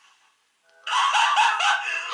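A woman laughing in quick, high-pitched giggles that start about a second in.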